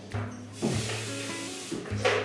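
Kitchen sink faucet running for about a second, water hissing into the sink, over steady background music.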